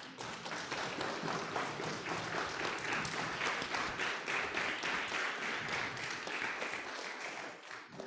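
Audience applauding: many hands clapping together, starting all at once and dying away near the end.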